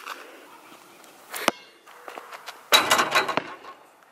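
A basketball hitting an outdoor hoop on a backward trick shot. There is a sharp knock about a second and a half in, then a louder rattling impact near the three-second mark as the ball strikes the backboard and rim.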